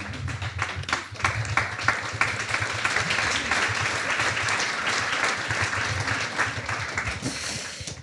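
Audience applauding: a dense, steady clapping that fades away near the end.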